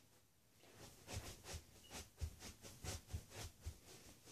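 Feet in socks stamping and landing on a carpeted floor during energetic dancing: a quick, uneven run of about a dozen soft thuds, starting about a second in.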